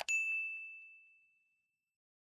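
A mouse click followed at once by a single bright notification-bell ding that rings out and fades away over about a second and a half.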